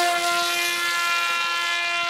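Parrot Disco fixed-wing drone's small rear pusher propeller and electric motor running at full throttle for a hand launch: a steady, high-pitched buzzing whine with many overtones, holding one pitch.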